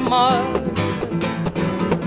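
Acoustic guitar strumming a Spanish-language folk song. The last held sung note of a verse wavers and fades in the first half second.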